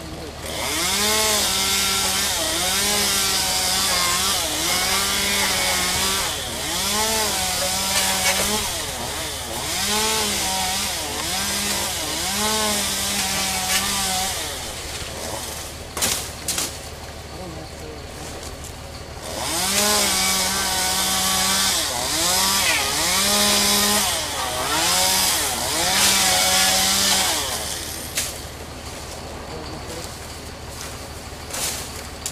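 Chainsaw cutting palm fronds in two long runs, its engine pitch dipping and climbing back again and again under load, with a few seconds of quieter running between the runs. A few sharp knocks sound during that pause.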